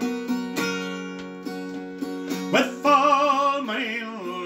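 Acoustic guitar strummed in a slow ballad accompaniment, chords ringing on. A man's singing voice comes in about two and a half seconds in on a held, wavering note.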